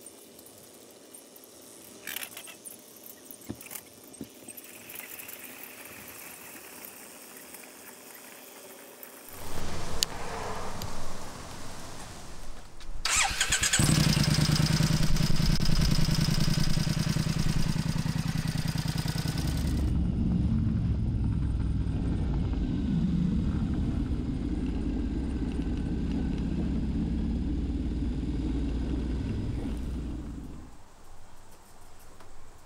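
A few light clicks, then about nine seconds in a brand-new Triumph Scrambler's parallel-twin engine is cranked and fires, settling into a steady idle.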